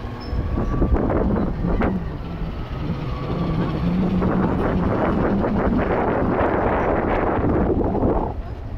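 Running noise of a moving vehicle carrying the camera, with wind buffeting the microphone. A rushing noise swells about four seconds in and stays loud to the end.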